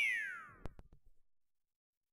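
Cartoon falling-object whistle sound effect: one tone sliding steadily down in pitch for under a second, followed by a single short click.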